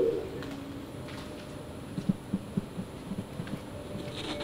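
Quiet stretch of a video's soundtrack played over loudspeakers in a lecture room: a voice trails off right at the start, leaving faint room hum and a few soft blips.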